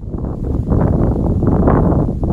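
Wind blowing on the microphone: a loud, gusty rush of noise that swells over the first half second and stays loud.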